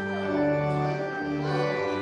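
Organ playing slow, sustained chords that move to a new chord every second or so.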